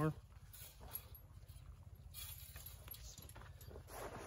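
A Texas Fence Fixer being worked on a barbed wire strand for one more twist: a few faint metal clicks and clinks, with a short scraping rattle about two seconds in, over a low steady rumble.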